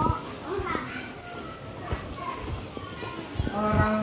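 Background chatter of children's and adults' voices, with a few short low bumps; a voice begins speaking more loudly near the end.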